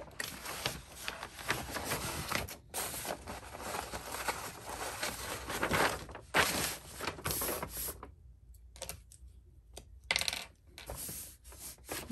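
Sheets of pattern tracing paper rustling and crinkling as they are unrolled and smoothed flat by hand on a table, with a pause of about two seconds near the end.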